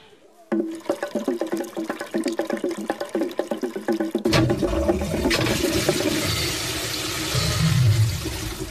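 A cartoon sound effect: a fast run of short clicking notes, then, about four seconds in, a loud rushing toilet flush that keeps going to the end.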